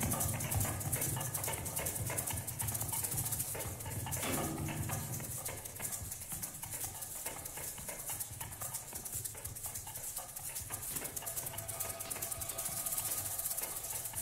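Live solo percussion: rapid rattling and clicking from small hand-held instruments, with a short low pitched sound about four seconds in.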